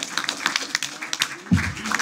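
Scattered applause from a small audience, many irregular claps, with a man's voice starting to speak near the end.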